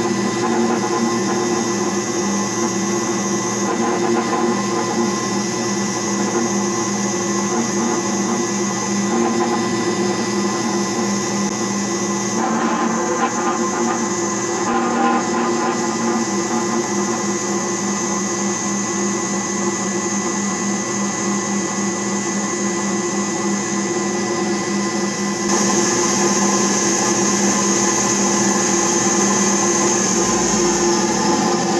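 Small metal lathe running under power, turning a metal bar with a carbide-insert cutting tool on a light 0.15 mm cut: a steady motor and gear whine with the hiss of the cut. It gets a little louder and hissier about 25 seconds in.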